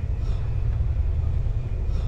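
Low, unsteady outdoor rumble with a faint hiss above it.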